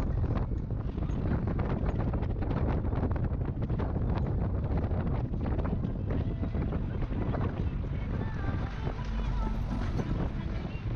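Wind buffeting the microphone over the low road rumble of a van driving along a mountain road, with frequent small knocks and rattles from the rough surface.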